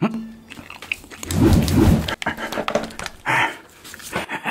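A man's loud, rough, breathy vocal huff lasting under a second, about a third of the way in, with a brief shorter vocal sound near the end.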